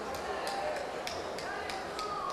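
Background murmur of a crowd's voices in a hall, with a few scattered handclaps.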